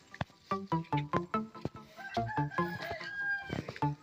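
A rooster crowing once, one long call from about two seconds in, over background music made of a steady run of short notes.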